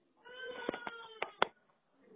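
A high, drawn-out cry lasting about a second, with a few sharp clicks over it, heard through a phone-call recording.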